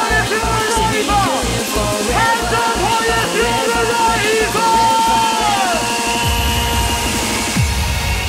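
UK hardcore dance track playing: a fast, even kick drum under a gliding synth lead. About six seconds in the kick drops out, leaving a held synth note and a falling sweep near the end.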